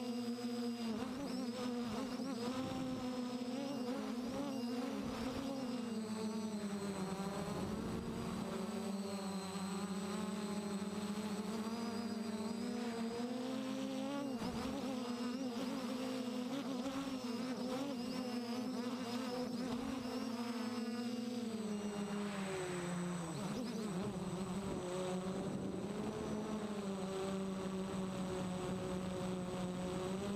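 Quadcopter's brushless motors and propellers buzzing, heard close up from a camera on the frame. The pitch wavers up and down with throttle and drops about two-thirds of the way through, then climbs slightly toward the end.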